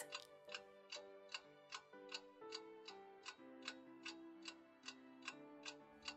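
Faint ticking-clock sound effect, about two and a half even ticks a second, over soft background music with held notes: a thinking-time countdown after a quiz question.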